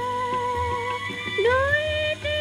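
A woman singing a Bengali modern song holds one long note, then dips and slides up into the next phrase about a second and a half in, over a rhythmic accompaniment.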